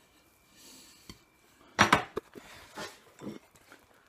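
A knife knocking and scraping on a plate while cutting into a soft cake. There is one sharp clink just under two seconds in, then a few lighter taps and scrapes.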